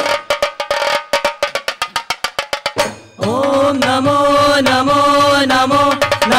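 Ghumat aarti percussion: a run of sharp strokes that quickens to about eight a second, then stops about three seconds in. The group's voices then come in together, singing long held notes over the drums.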